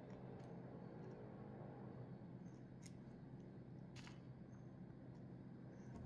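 Near silence: room tone with a steady low hum and a few faint clicks, about three over several seconds.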